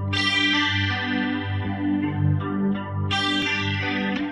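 Instrumental backing-track intro: an electric guitar with a chorus effect picking single notes in a slow arpeggio over a sustained bass.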